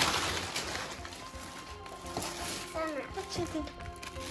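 Clear plastic bags crinkling and rustling as crocheted dolls are unwrapped, loudest in the first second and then softer. A few short voice sounds and background music with a steady held tone come in about a second in.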